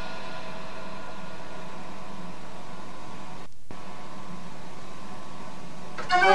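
Steady hiss with faint hum in the pause between two dance-organ tunes, with a brief dropout about three and a half seconds in.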